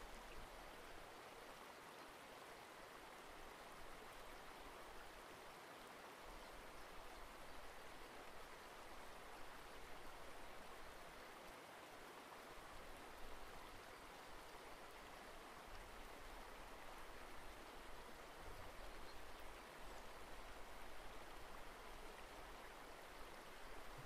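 Near silence: faint, steady hiss of room tone and microphone noise.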